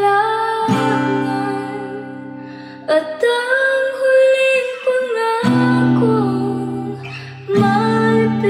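A woman singing a slow ballad while playing an acoustic guitar. A few chords are strummed and left to ring under the voice, which holds long notes in the middle of the passage.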